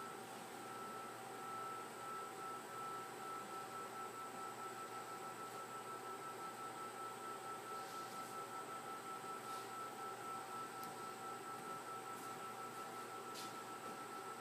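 Steady electronic tones, a clear high one with a fainter lower one beneath it, holding one pitch throughout with a slight regular pulse in loudness. A few faint ticks sound in the second half.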